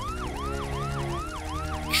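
Emergency-vehicle siren in a fast yelp, its pitch rising and snapping back down about four times a second, over a low steady drone.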